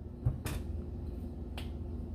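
A soft knock, then a sharp click, and another click about a second later: a glass soda bottle being picked up and handled on a kitchen counter.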